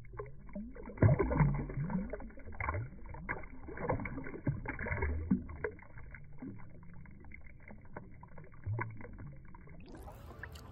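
Water splashing and sloshing as a bass is released by hand and kicks away, loudest about a second in. The splashing settles after about five seconds into quieter lapping with an occasional small gurgle.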